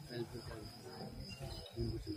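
Crickets chirping in a steady high-pitched trill, with faint voices talking underneath.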